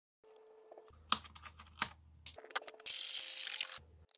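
Metal parts clicking and rattling in a series of sharp clicks, then a loud burst of rushing noise lasting about a second, starting about three seconds in.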